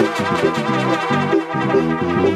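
Live regional Mexican banda music: two trumpets and a trombone play a melodic brass fill between sung lines, over keyboard accompaniment with a moving bass line.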